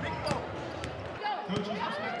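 A basketball bouncing on a hardwood gym floor, a couple of sharp bounces about half a second apart, over crowd chatter.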